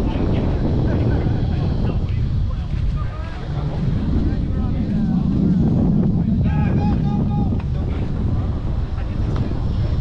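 Wind buffeting the camera microphone with a steady low rumble, while players' voices call out across the softball field, including a quick run of about four short calls a little past halfway.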